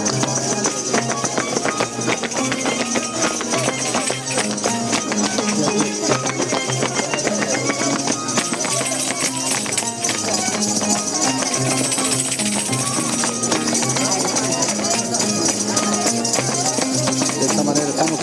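Live Andean festival music led by a harp, a low melody stepping over a steady plucked rhythm, with crowd chatter underneath.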